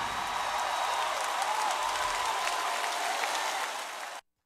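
Audience applauding after a song, with faint held tones underneath.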